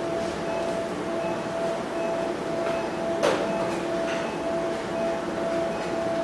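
Steady hum and hiss of operating-room equipment, with a monitor beeping softly about once a second. A single brief sharp noise comes a little after three seconds in.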